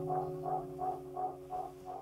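Acoustic guitar's final chord ringing out and fading away, its sound pulsing evenly about three times a second as it dies.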